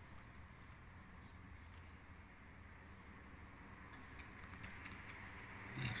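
Quiet open-air background with a few faint, short, high chirps about four seconds in, from swallows calling in alarm at a passing peregrine falcon. A brief, louder low sound comes near the end.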